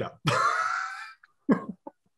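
A man laughing: one breathy laugh of about a second, trailing off, then a couple of short puffs of laughter.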